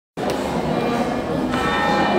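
Church bells ringing, the sound cutting in abruptly just after the start, with the long ringing tones standing out more clearly from about halfway.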